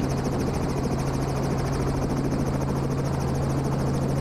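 2005 Robinson R44 Raven II helicopter running on the ground, heard from inside the cockpit. Its six-cylinder piston engine and turning rotor make a steady low drone with a fast, even pulsing on top.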